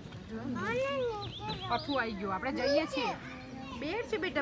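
Several high-pitched, excited voices talking and calling out, their pitch sweeping up and down.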